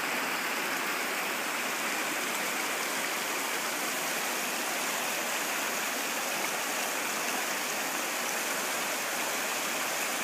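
Rocky stream rushing over stones and small rapids, a steady, unbroken water noise.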